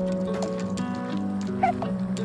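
An infant hiccuping: short squeaky hiccups about half a second in and twice in quick succession near the end, over background music with sustained notes.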